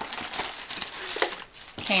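Clear plastic wrapping crinkling and rustling as a rolled diamond-painting canvas in its plastic sleeve is handled and slid across a table.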